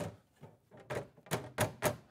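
Clear plastic top cover of a QIDI Q1 Pro 3D printer being fitted and pressed onto the printer's frame: a series of sharp plastic knocks, one at the start and four in quick succession in the second half.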